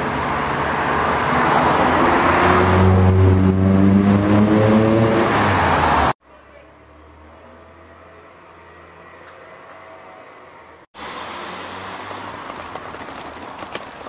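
Road traffic: cars driving past on a busy road, with one engine rising in pitch as it accelerates. About six seconds in the sound cuts off abruptly to a much quieter, steady low hum, which gives way after another sudden cut to moderate street noise.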